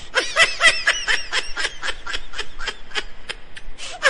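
Rapid, high-pitched snickering laughter: a quick, even string of short laugh pulses.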